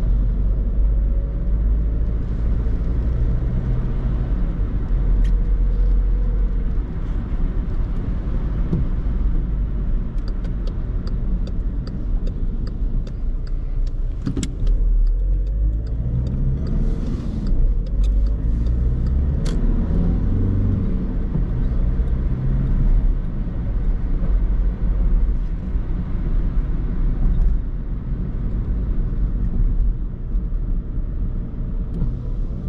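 In-cabin sound of a 2010 Skoda Fabia II's 1.6 TDI four-cylinder diesel engine and tyres on a wet road: a steady low rumble. About midway the engine note drops, then rises twice as the car pulls away again through the gears, with a run of light clicks around the middle.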